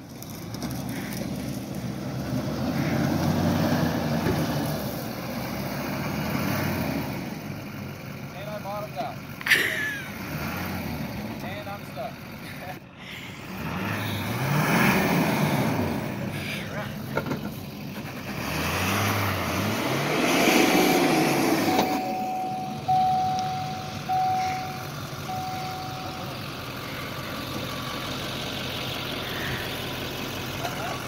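A 6.6 L LBZ Duramax V8 turbo-diesel in a 2007 Chevrolet Silverado 2500HD revving hard and easing off in three long surges as the truck tries to climb out of a steep pit. A run of short, even beeps sounds for a few seconds after the third surge.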